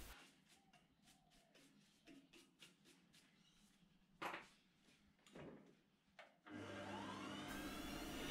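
Near silence with a few faint clicks and one short knock, then about six and a half seconds in a small metal lathe's motor starts and runs with a faint steady hum, rising in pitch as it spins up.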